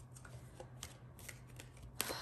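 Faint, scattered light clicks, a few each second, over a low steady hum.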